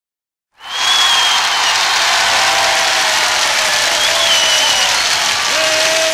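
A large crowd applauding and cheering, with a few high whistles, cutting in suddenly about half a second in. It is the crowd opening of a record.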